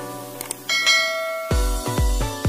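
A short click, then a bright bell-chime sound effect ringing for just under a second, as for a subscribe notification bell. About one and a half seconds in, electronic dance music with a heavy bass beat comes in.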